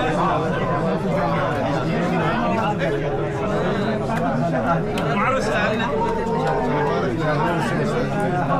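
Several men talking over one another at close range: overlapping chatter and greetings from a small crowd, with no single voice standing out.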